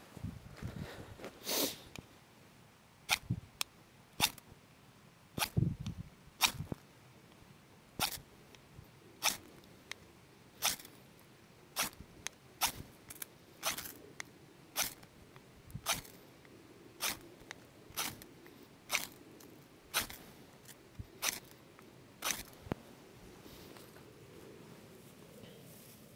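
A knife spine scraping down a ferrocerium rod in about twenty short, sharp strikes, roughly one a second, throwing sparks onto shredded tulip tree bark tinder. The strikes stop near the end without the tinder catching.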